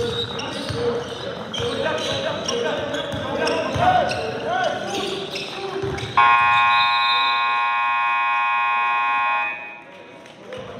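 Basketball bouncing and sneakers squeaking on a hardwood gym floor, with players' voices. About six seconds in, the scoreboard buzzer sounds, a loud steady blare of several tones held for about three seconds, marking the clock running out.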